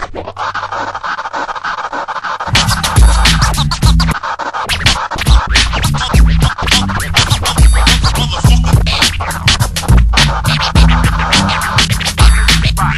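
Hip-hop remix with DJ turntable scratching. A heavy bass-and-drum beat comes in about two and a half seconds in, with quick scratch strokes running over it.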